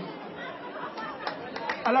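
Low murmur of voices from a small crowd of people talking among themselves, with a man's voice saying a short word near the end.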